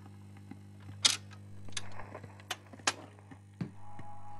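Vinyl record turning under the stylus in the lead-in groove: surface pops that repeat once per turn of the record, about every 1.8 seconds, over a steady low hum. A musical note starts at the very end.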